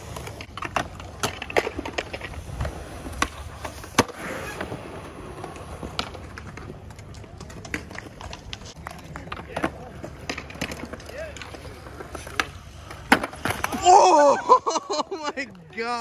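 Skateboard wheels rolling on a concrete skatepark with repeated clacks and knocks of the board. About two seconds before the end the rolling stops and a loud cry follows as the skater falls.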